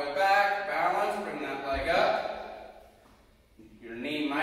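A man speaking, pausing briefly near the end.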